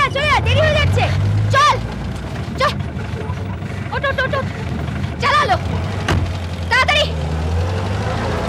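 Hindustan Ambassador car driving slowly past, its engine a steady low hum, while a person's voice calls out in several short shouts.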